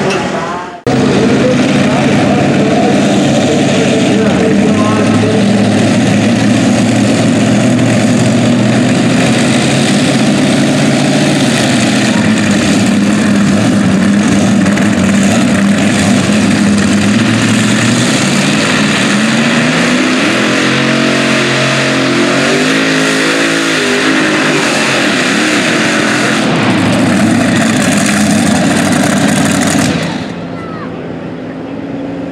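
Supercharged engine of a modified pulling tractor running loud. Its pitch dips and climbs again between about two-thirds and five-sixths of the way through as it is revved.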